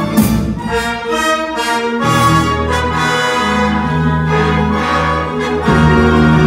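Small live orchestra playing classical music: sustained chords, with low notes coming in about two seconds in and a louder passage near the end.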